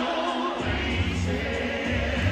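Live R&B concert music from an arena sound system, heard from the stands: a sung vocal line over heavy bass. The bass is missing at the start and comes back in about half a second in.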